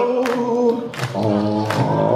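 Male voices singing long held notes on stage, sliding to a new pitch about halfway through, punctuated by a few sharp drum hits from a rockabilly band.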